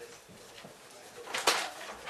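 A short, breathy burst of air, a forceful exhalation from a performer blowing against a sheet of paper held in the mouth, about a second and a half in.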